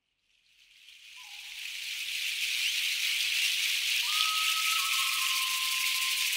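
A hand rattle shaken continuously, fading in over the first two seconds into a steady, even hiss. Two faint long-held whistle-like tones sound over it, the second starting about four seconds in.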